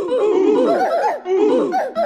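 Laughter: a quick run of 'ha-ha-ha' notes falling in pitch, the same burst repeating twice as a loop.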